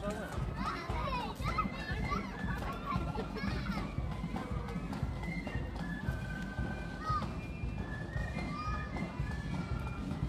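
Chatter of a street crowd with children's voices calling and shouting, several overlapping voices at once, over a steady low rumble.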